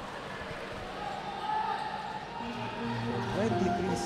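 Crowd noise in a basketball arena during live play. About halfway through, a steady low held tone joins it.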